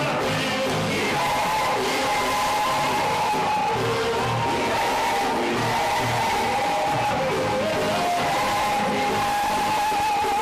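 Loud, continuous live praise music from a band, with a held melody line that slides between notes over a pulsing bass.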